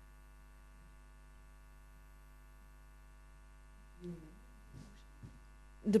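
Faint steady electrical mains hum with many even overtones, from the room's microphone and sound system. A brief faint voice sound comes about four seconds in, and speech begins at the very end.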